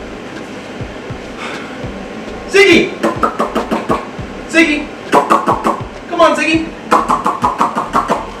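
A man's wordless vocal sounds, short calls with rapid rattling clicks, coaxing a young crocodile toward him; they start about two and a half seconds in after a quieter stretch.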